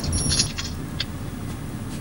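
Low, steady hum of a car cabin, with a single sharp click about a second in; background music stops just before the hum.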